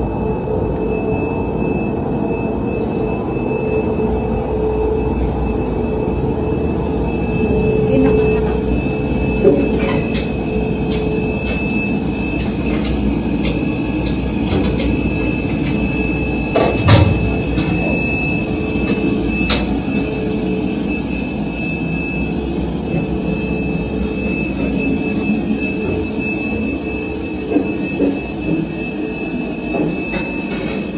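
Steady low machine rumble inside a steel hull, with a constant thin whine over it and a few sharp knocks, the loudest about 17 seconds in.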